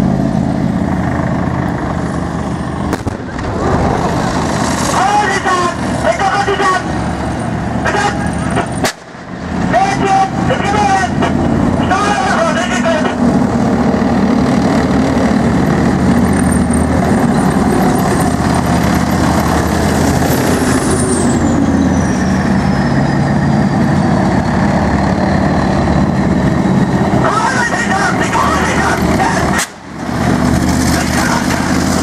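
Diesel engines of main battle tanks running with a steady low drone. About twenty seconds in, a high whine falls away.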